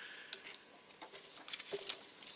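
Low room tone in a pause, with a few faint, scattered clicks.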